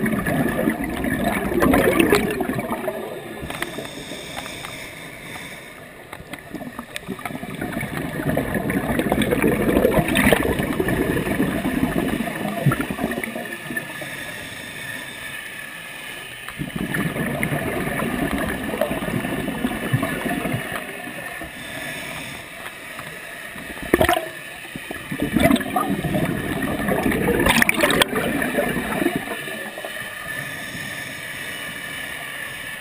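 Scuba regulator exhaust bubbles rushing and gurgling around a GoPro underwater housing, swelling four times, one long swell with each breath out, then fading between breaths. A few sharp clicks sound near the end.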